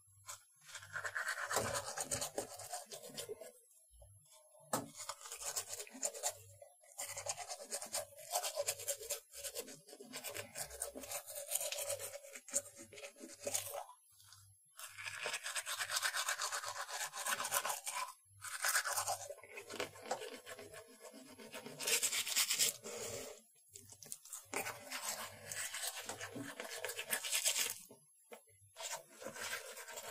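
A toothbrush scrubbing teeth in quick back-and-forth strokes. It comes in runs of several seconds, broken by a few short pauses.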